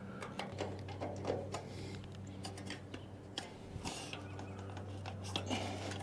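Scattered small metallic clicks and scrapes of a screwdriver turning the slotted screws on a furnace vent cap's band clamp, over a steady low hum.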